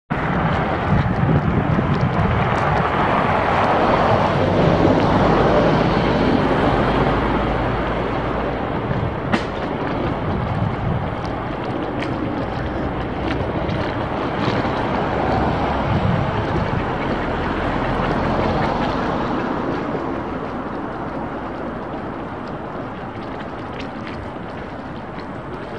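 Outdoor street noise: a steady low rumble mixed with wind on the microphone, loudest early and slowly fading, with one sharp click about nine seconds in.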